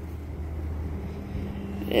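Steady low drone of the 2011 Lincoln MKX's 3.7-litre V6 idling, heard at the tailpipe, with a faint steady hum above it.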